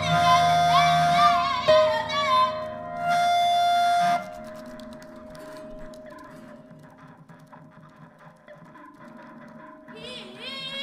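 Free improvised music: a high, wordless voice with wide, wavering vibrato over long held tones. The music cuts off about four seconds in, leaving faint scattered clicks over a soft held tone.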